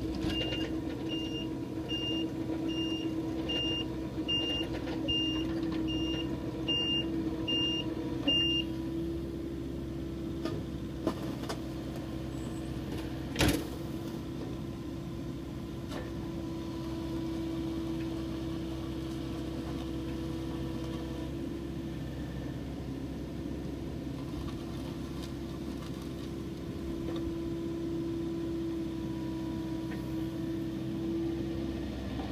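Komatsu PC50MR-2 mini excavator's diesel engine running steadily with a constant hum. For the first eight seconds or so a high-pitched travel alarm beeps about once every three-quarters of a second while the machine tracks forward. A single sharp knock comes a little before halfway.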